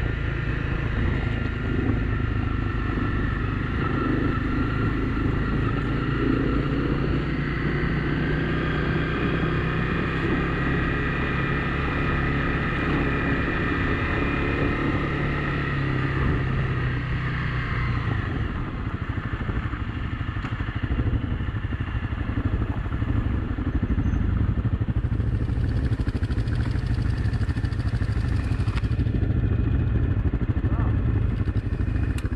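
Honda CRF250 Rally's single-cylinder engine running as the bike rides a gravel forest track, with tyre and road noise. About two-thirds of the way through the engine note changes and drops as the bike slows toward a stop behind the other riders.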